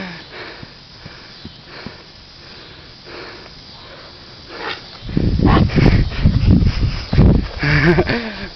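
Faint hiss for a few seconds. From about five seconds in, loud, uneven low rumbling and buffeting on the phone's microphone, from wind or from the phone being handled on the move.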